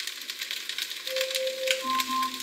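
Food frying, with dense irregular crackling and ticking. Near the end, a couple of steady held notes sound over it.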